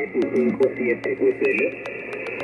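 A distant amateur station's voice received over single-sideband on an Icom IC-7300 HF transceiver, sounding narrow and thin, with steady static crackle. The voice stops near the end and leaves band hiss.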